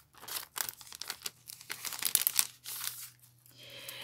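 A clear plastic bag and paper cards crinkling and rustling in short, irregular bursts as they are handled.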